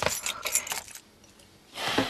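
Car keys jangling and rattling for about a second, then a pause, then a brief rush of noise near the end.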